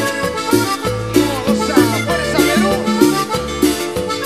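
Peruvian cumbia band playing an instrumental passage: a lead melody that slides up and down in pitch over a steady bass and percussion beat.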